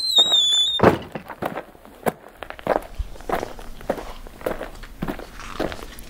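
A brief high-pitched squeal lasting under a second, wavering and dropping slightly, followed by scattered light clicks and taps.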